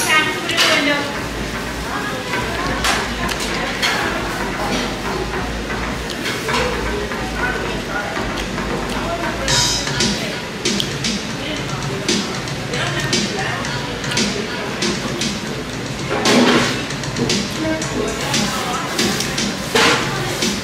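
Restaurant background music and diners' chatter, with crinkling and rustling plastic as gloved hands work through a bag of boiled seafood; a few sharper crackles stand out about halfway and again near three-quarters of the way in.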